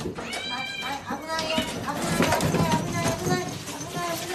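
Several cats meowing for food as the bowls are brought to them, with one loud, arching meow about half a second in and shorter calls after it.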